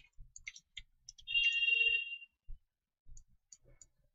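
Computer keyboard keystrokes: a scatter of light, irregular clicks. About a second in comes a short high tone lasting about a second, louder than the typing.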